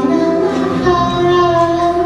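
A female vocalist singing long held notes over a live blues band.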